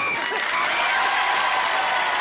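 Crowd cheering and applauding, with a high wavering call held over it for the first second or so.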